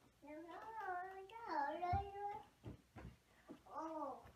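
A toddler babbling in a high, sing-song voice, with no clear words. Her voice glides up and down for about two seconds, and a shorter call comes near the end. A few short knocks fall in between.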